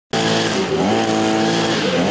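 Petrol string trimmer (brush cutter) running as it cuts grass, the engine revving up about a second in, holding high, then dropping back near the end.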